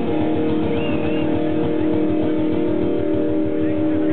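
Live heavy metal band playing: distorted electric guitar chords held over fast, driving drums.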